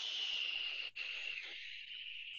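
A person breathing out slowly through the mouth: a long hiss that tapers off as the breath runs out, with a brief break about a second in. It is the four-count exhale of box breathing.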